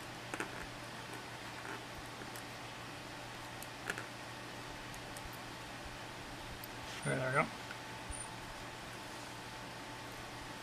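A few faint light clicks of a thin screwdriver and a small plastic 3D-printed bias tape maker being handled, over a steady low hum.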